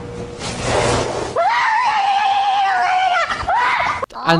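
A noisy rush for about a second and a half, then one long, high-pitched scream lasting about two seconds that wavers slightly and ends abruptly.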